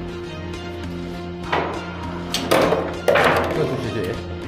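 Background music with three hard knocks from a foosball table: the ball struck by the rod figures and banging around the wooden table. The knocks come about a second and a half in, around two and a half seconds, and at three seconds, the last two the loudest, each with a short rattle after it.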